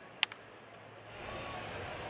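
A single sharp crack of a baseball bat hitting a pitched ball about a quarter second in, followed by faint ballpark crowd noise that grows slightly louder.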